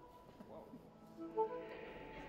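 Quiet ensemble music: soft held notes fading out, then a few short soft notes with a brief louder accent about a second and a half in.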